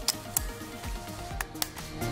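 Sharp plastic clicks from an insulin pump's cannula inserter as the cannula assembly is pushed in and latches into the cocked position. Background music plays throughout.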